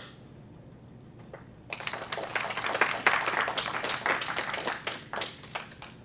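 Audience applauding, starting about two seconds in and dying away near the end.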